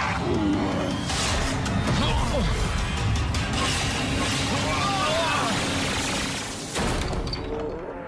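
Cartoon action sound effects over dramatic background music: a slug shot hitting home with explosive blasts and crashes, the clearest about one, two and seven seconds in, mixed with shouting voices.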